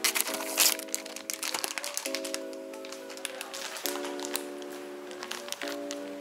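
Background music of sustained chords that change about every two seconds, with a cluster of clicks and rustling in the first second and a half.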